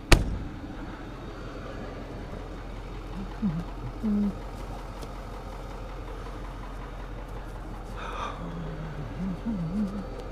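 Tow truck engine idling steadily, with one sharp clack right at the start.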